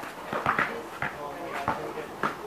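A basketball bouncing several times on a court surface as it is dribbled, the knocks irregularly spaced, with players' short shouts and voices among them.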